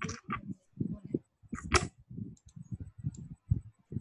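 A muffled, low voice murmuring in short broken phrases, with two brief hissy noises, one at the start and one just before the two-second mark.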